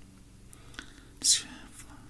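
A quiet pause in a man's talk: two faint clicks, then a little past the middle a short breathy hiss of whispered breath.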